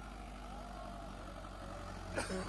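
Mahindra 585 DI XP Plus tractor's diesel engine running steadily under load as the tractor climbs a sand dune.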